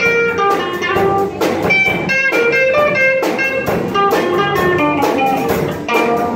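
Live rock band of several electric guitars, bass guitar and drum kit playing a song, distorted guitar chords and melody lines over a steady drum beat.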